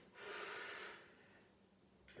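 A woman's single sharp, audible breath, just under a second long, taken with the effort of a Pilates arm-and-leg lift.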